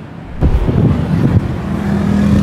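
A sudden rush of noise about half a second in, then a Honda City's i-VTEC petrol engine idling with a steady low hum.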